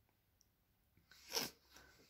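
Near silence, then a single short, hissy breath through the nose about a second and a half in, from someone close to the microphone.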